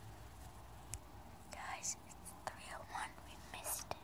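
A person whispering a few short phrases from about a second and a half in, with a small click just before.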